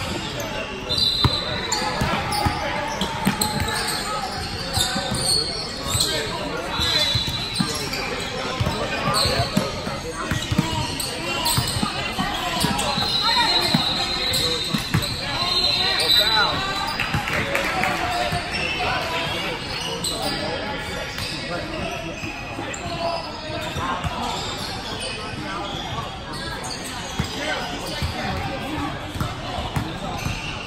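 Indoor basketball game on a hardwood court, echoing in a large gym. A basketball bounces on the floor, sneakers give short high squeaks, and players and spectators call out in indistinct voices.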